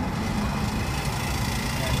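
Road and tyre noise heard inside the cabin of a Coda electric car as it accelerates at around 30 mph: a steady low rumble with no engine note.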